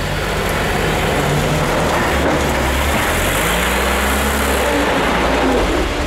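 A motor vehicle's engine running steadily under a lot of mechanical noise, its pitch rising and falling slightly near the middle.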